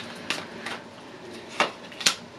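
Quiet room with a few faint, short clicks scattered through a pause.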